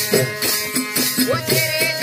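Live bhajan kirtan music with a harmonium holding sustained notes over dholak drum beats. A shaken, jingling hand percussion keeps a steady pulse of about four strokes a second.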